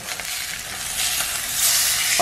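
Salmon fillets sizzling in hot oil in a cast iron skillet. About a second in, as a fillet is flipped with a spatula onto its raw side, the sizzle grows louder and brighter.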